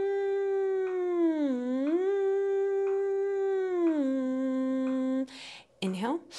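A woman humming a sliding scale on "mm". The pitch glides up, holds, dips and rises again, then slides back down and stops about five seconds in. Short, quick inhales through the nose follow: stacked inhales for breath-work.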